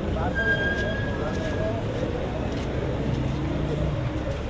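Busy street noise: indistinct voices over the rumble of traffic, with a thin steady high tone lasting about a second and a half near the start.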